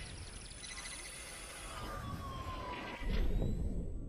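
Sound effects of an animated channel logo: a soft whooshing rumble with a slowly falling tone in the middle, then a sudden hit about three seconds in that dies away.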